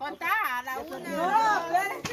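Several people's voices talking and calling out over one another in excited, lively chatter.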